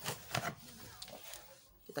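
A few brief knocks and rustles of a cardboard box and its packing being handled, loudest in the first half second, then faint room noise.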